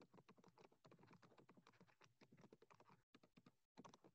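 Very faint computer keyboard typing: a quick, uneven run of soft key clicks.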